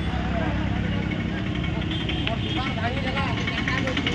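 Steady low engine hum, as of a vehicle idling, under faint background chatter of a crowd.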